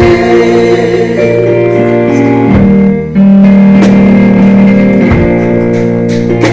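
Gospel song sung live by singers on microphones with instrumental backing.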